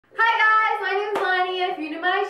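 A woman's voice drawn out in long sung notes, with one sharp hand clap a little over a second in.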